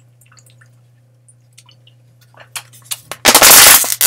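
Drinking from a plastic water bottle: faint swallows and small mouth clicks, then about three seconds in a very loud, brief rush of noise that clips the recording.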